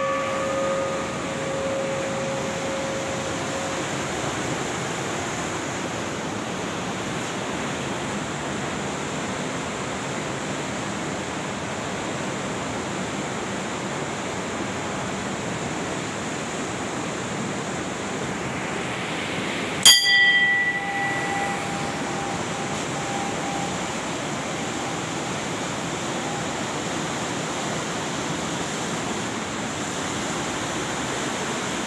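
Steady rush of the fast Bhagirathi river, with a hanging brass temple bell struck once about two-thirds of the way through, ringing for two or three seconds. The ringing of another bell strike fades out in the first seconds.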